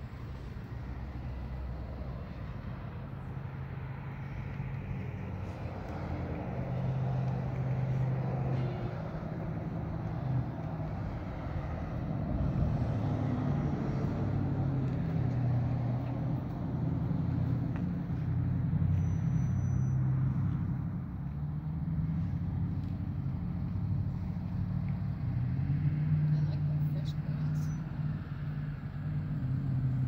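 Road traffic passing, rising and falling in loudness, with low indistinct voices.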